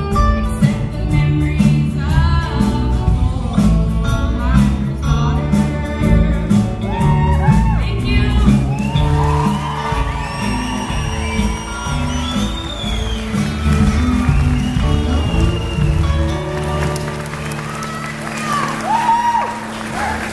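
Live band of electric bass, drums and guitar playing to the end of a song, with a girl's singing at first. Audience cheering and whoops come in over the band in the second half.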